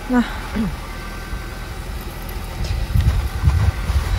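A car engine idling, with wind gusts rumbling on the microphone in the second half.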